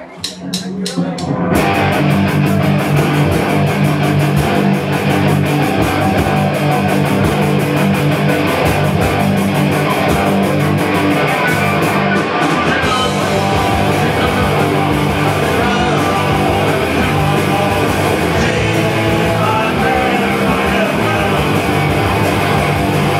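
Live punk rock band of distorted electric guitars, bass and drum kit playing a fast song, loud and steady. It opens with a quick run of evenly spaced ticks, and the full band comes in about a second and a half in.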